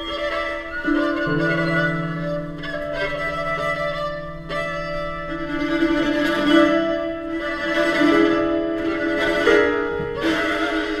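String quartet of a piano quintet playing a contemporary chamber piece: violins, viola and cello holding long, overlapping bowed notes, with a low held note coming in about a second in and sustained until about seven seconds.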